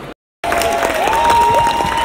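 Audience applauding and cheering, starting after a brief silence about half a second in, with one long held high whoop over the clapping.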